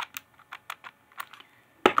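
Plastic clamshell packs of Scentsy wax bars handled in the fingers: a run of light, irregular clicks, then a louder plastic crackle near the end.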